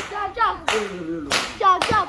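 Jab Jab masqueraders chanting, over sharp cracks in a steady beat about every two-thirds of a second.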